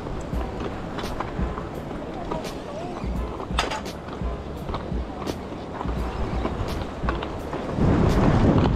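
Wind buffeting the microphone over surf washing against jetty rocks, with scattered sharp clicks.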